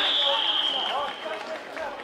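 A referee's whistle blown in one long, steady blast that stops about a second in, marking the play dead after a kickoff-return touchdown, over shouts and cheers from players on the field.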